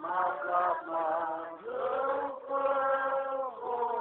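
Voices singing slowly in long held notes, phrase by phrase with short breaks between.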